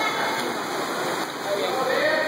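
Freestyle swimmers splashing in an indoor pool, a steady wash of churning water, with people's voices in the background.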